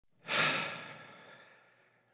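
A person's single long sigh at the start of a rap track: a breathy exhale that comes in sharply and fades away over about a second and a half.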